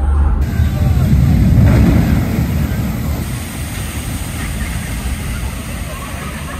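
Water-ride boat splashing down and skimming across the water: a loud rushing surge of water that peaks a second or two in, then settles into a steady wash of spray.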